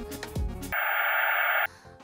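Background music, then about a second of TV-static noise with a thin high whine above it, a sound effect of an old television switching on, which cuts off suddenly.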